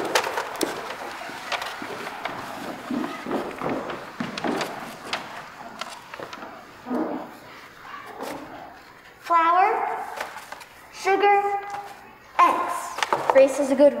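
Scattered footsteps and light knocks on a wooden stage floor as children move into place. About nine seconds in, a child's voice calls out twice in high, drawn-out tones, and then spoken lines begin.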